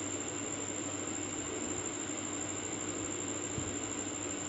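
Steady background hum and hiss, even throughout, with no distinct events.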